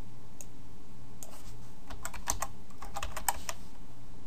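Computer keyboard keystrokes: a run of quick clicks starts about a second in and stops shortly before the end, over a steady low hum.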